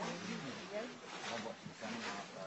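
Indistinct, low human voices: short stretches of muffled talk or vocalising that bend in pitch, over a steady background hiss.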